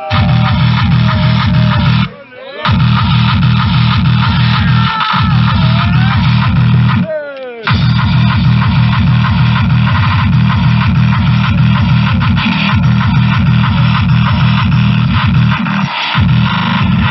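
Loud tekno played through a free-party sound system, with a heavy, fast kick-drum beat. The beat cuts out briefly twice, about two seconds in and again around seven seconds, leaving sweeping, swooping tones in the gaps.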